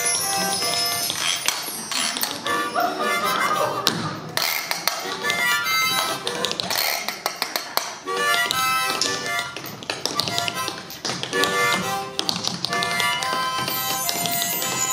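Live harmonica playing short chords in bursts over rhythmic scraping and clicking on a metal washboard (frottoir) worn on the chest, with conga drums behind.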